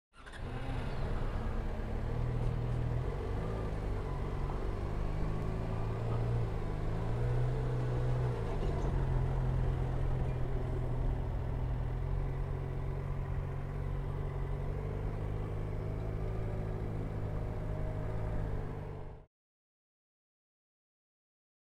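Yamaha XJ6 Diversion F motorcycle's inline-four engine running at low revs while riding slowly, its pitch rising and falling a little, with road and wind noise. The sound cuts off suddenly near the end.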